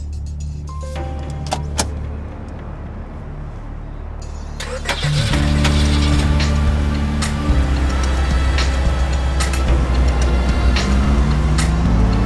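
Several cars pulling up with their engines running, under dramatic music that grows louder about five seconds in.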